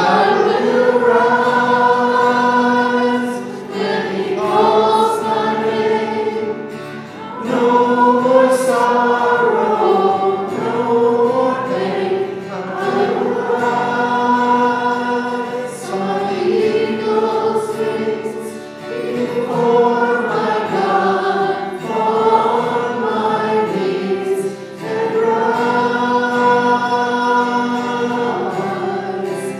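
A small worship team of several voices singing a slow worship song together, in sung phrases of a few seconds with short breaks between them.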